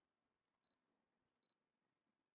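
Near silence, broken by two faint, short, high-pitched beeps under a second apart.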